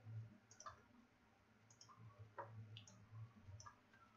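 A handful of faint, irregular clicks from a computer keyboard and mouse while code is being edited, over a faint low hum.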